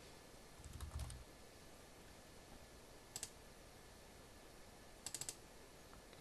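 Faint clicking of laptop keys in three short groups: a few clicks with a soft low thump about a second in, a single click at about three seconds, and a quick run of about four clicks near the end. Quiet room tone in between.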